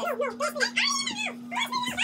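Boys' high-pitched voices protesting and whining without clear words over a bad-tasting mouthful, with a steady low hum underneath.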